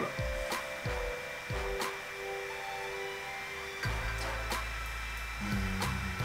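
Computer keyboard keys clicking irregularly, roughly one or two a second, over a steady high-pitched whine and sustained low tones.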